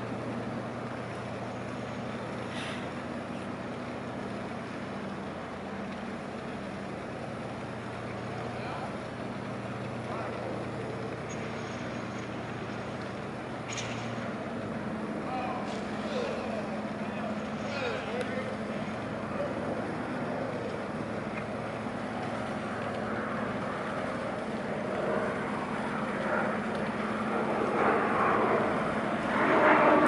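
Diesel engines of a 166-foot crab fishing vessel running at slow speed, heard as a steady low hum made of two held tones. The overall level swells over the last few seconds.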